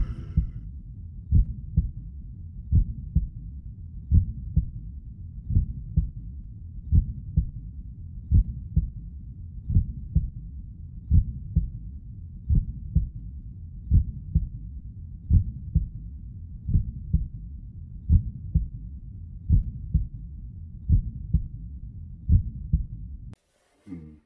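Slow heartbeat sound, a low muffled double thump repeating about every second and a half over a steady low drone; it cuts off suddenly near the end.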